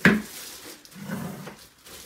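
A sharp knock as a plastic-wrapped part of the ice cream maker is handled against the freezer bowl, followed by softer handling noise about a second in.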